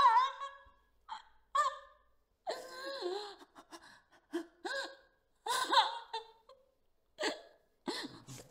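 A woman sobbing and gasping in short, broken bursts with pauses between them.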